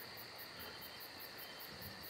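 Faint steady background noise between spoken lines: a low hiss with a thin, steady high-pitched whine.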